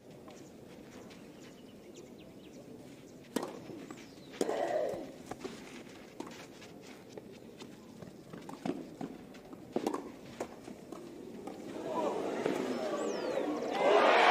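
Low murmur of a tennis crowd with a few sharp knocks of a tennis ball being bounced and struck. The crowd noise swells near the end.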